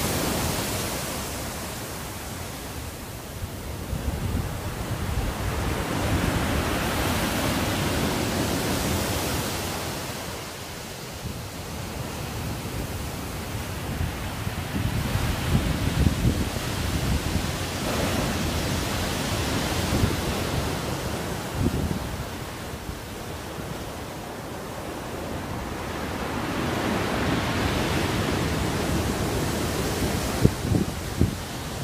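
Storm surf on the Black Sea in a six-point sea: waves breaking and crashing onto the shore and embankment in a steady roar that swells and ebbs every several seconds, with wind buffeting the microphone.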